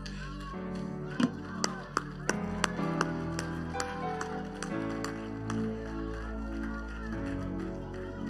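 Stage keyboard playing held chords that change every couple of seconds, with a scattering of sharp hand claps in the first half and faint voices underneath.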